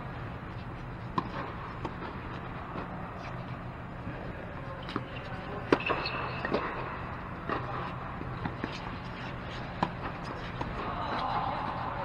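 Tennis balls struck by rackets and bouncing on a hard court during a doubles rally: a string of sharp, separate pops a second or more apart, the loudest about six seconds in. Under them runs a steady low hum.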